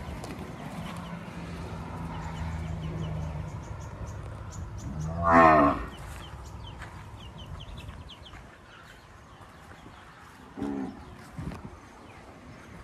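Brahman-cross cattle mooing: one loud moo that rises and falls about five seconds in, and a shorter call near the end.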